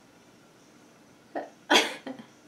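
Quiet room tone, then about a second and a half in, a woman's short breathy laugh: two puffs of breath, the second louder.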